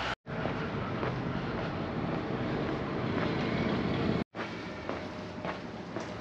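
Outdoor street ambience: a steady rushing noise like distant traffic, broken by two sudden edit cuts. After the second cut it is quieter, with a few faint ticks.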